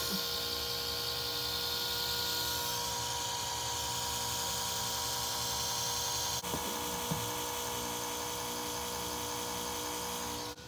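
Carter electric fuel pump mounted under an Opel GT, running steadily on key-on power with a constant buzzing whine: the newly wired pump is working.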